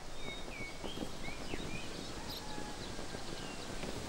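Outdoor ambience: a steady low background hiss with scattered short bird chirps throughout.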